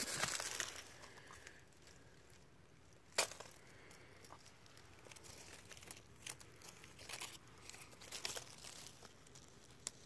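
Faint rustling and crinkling of leaves and dry pine needles brushed by hand, loudest in the first second, with a single sharp click about three seconds in and scattered small ticks later.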